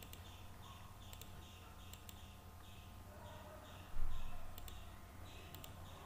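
Faint computer mouse clicks, four times, each a quick double tick of button press and release, with a louder dull thump about four seconds in, over a low steady background hum.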